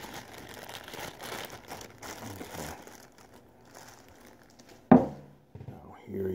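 Clear plastic bag crinkling as a statue is pulled out of it, busiest in the first few seconds and then quieter rustling. A single sharp knock about five seconds in.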